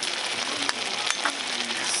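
Beef, onion and diced tomatoes sizzling steadily in a hot pan, with a few faint clicks.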